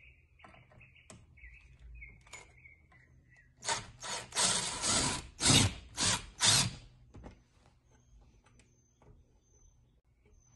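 Ryobi cordless impact driver driving a self-tapping screw through a metal hose clamp into pegboard. It runs in about five short trigger bursts over some three seconds, starting a few seconds in.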